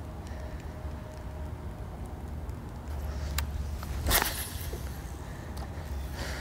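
Faint handling noise from a fishing rod and baitcasting reel under a low steady rumble, with a single click about three and a half seconds in and a short rustle about half a second later.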